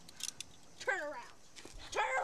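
A short, high-pitched cry that falls in pitch, a little under a second in, with a few faint clicks just before it. A second cry starts right at the end.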